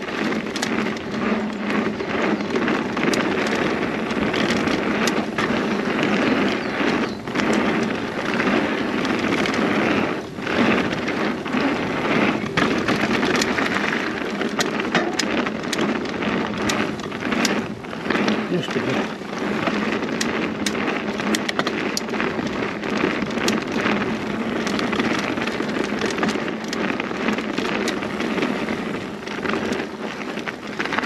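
Mountain bike riding over a dry dirt trail: a steady rush of tyre and trail noise, broken by frequent sharp clicks and rattles as the bike goes over bumps.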